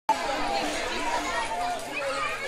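A crowd chattering, many voices talking over one another.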